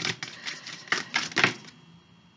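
Oracle card deck being shuffled by hand: a run of quick, irregular papery slaps and clicks that dies away over the last half second.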